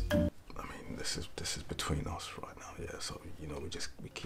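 Background music cuts off just after the start, then a man whispers quietly.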